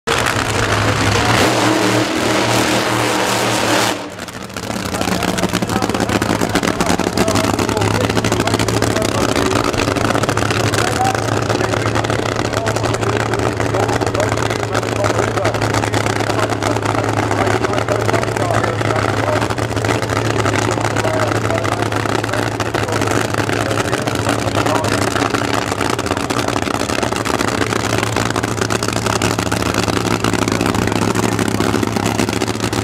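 Supercharged, nitromethane-fuelled engine of a fuel altered drag car idling steadily, with a brief drop about four seconds in.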